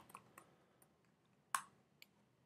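A few faint, short clicks against near silence, the sharpest about one and a half seconds in: keystrokes on a computer keyboard as a word is typed and a notebook cell is run.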